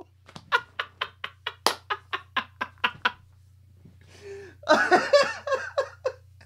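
A man laughing: a quick run of short, breathy bursts, about five a second, for the first three seconds, then after a brief pause a louder, voiced burst of laughter near the end.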